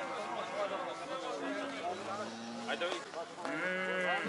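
Crowd of men talking at a livestock market, with a farm animal's long, pitched call starting near the end.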